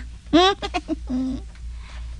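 A short burst of voice: a quick rising vocal sound, then a brief low hum like a murmured "mm", from a radio drama actor between lines.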